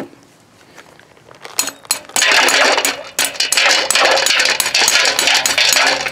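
Slotted metal spoon stirring and scooping powder-coated cast lead bullets in a pan of water under a wire-mesh basket: rapid clinking and rattling that starts about a second and a half in, after a quiet start.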